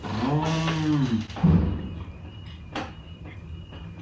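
A man's drawn-out, closed-mouth "hmm" of thought while tasting, its pitch rising and then falling, followed by a short low sound and, later, a faint click.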